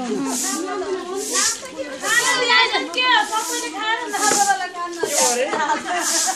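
Several voices singing a folk song with long, sliding notes, over a short hissing beat that repeats about once a second.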